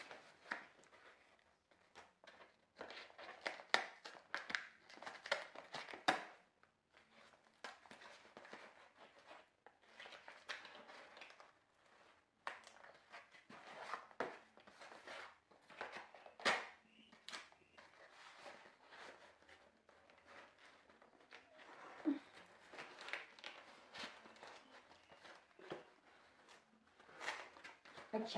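Cardboard shipping box being cut and pulled open with a knife: irregular scraping, tearing and crinkling of cardboard, with scattered sharp clicks and knocks.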